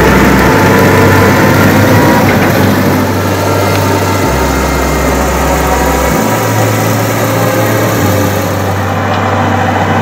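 New Holland T5.115 tractor's four-cylinder turbo diesel (FPT F5C) running steadily under load as it works through a flooded rice paddy.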